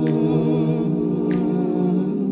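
A cappella vocal music: humming held on steady notes, with a short, soft hissing tick about every second and a quarter.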